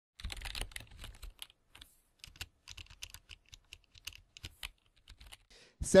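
Quick, irregular clicks and taps like keys typing on a keyboard, densest in the first second or so.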